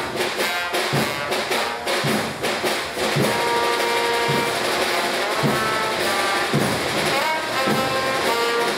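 Live brass and drum band playing: trombone, saxophone and low brass over snare and bass drums. The horns hold long sustained notes from about three seconds in, with a drum stroke roughly once a second.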